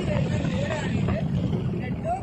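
Steady rush of wind and road rumble from a motorcycle on the move, with a person's voice over it.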